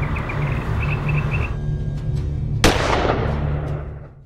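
A single pistol gunshot about two and a half seconds in: a sudden loud crack with a long fading tail, over background music with a deep bass. The music fades out at the end.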